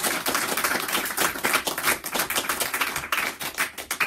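Audience applauding, a dense patter of many hands clapping that thins out near the end.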